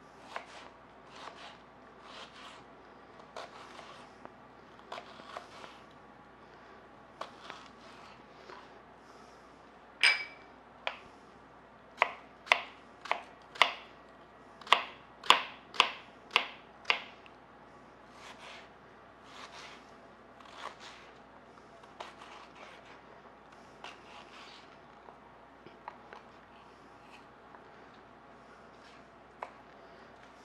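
Kitchen knife chopping an onion on a plastic cutting board: uneven knocks of the blade on the board, with one strike about a third of the way in that rings briefly. Around the middle comes a faster, louder run of strokes, then softer scattered chops.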